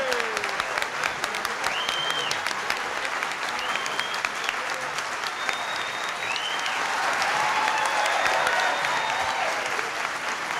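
A large indoor crowd applauding steadily, with scattered voices calling out over the clapping.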